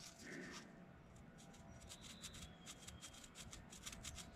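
Near silence, with faint rustling and a few light ticks as a gloved hand holds a braided steel hose in place.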